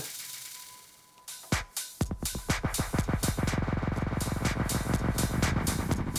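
Electronic dance track with a drum-machine beat played through a DJ mixer: the music fades away over about a second to near silence, then comes back in about a second and a half in and runs on with a steady beat.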